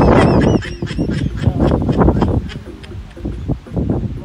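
Geese honking: a quick run of loud calls in the first second, then fading.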